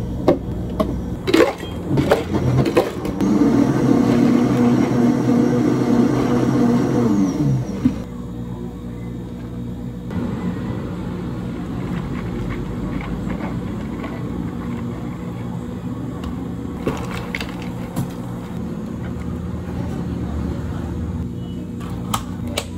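Countertop blender motor running steadily for about five seconds while blending watermelon juice, then winding down and stopping. Around it, plastic cups and ice clink a few times, and tea is poured over ice.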